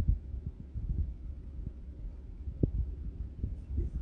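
A low rumble with irregular soft thumps, one of them stronger about two and a half seconds in.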